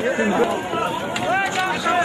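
Men's voices talking, with crowd noise behind.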